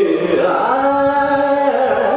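Male Carnatic vocalist singing a melodic phrase. His voice dips in pitch in the first half second, then holds a long steady note.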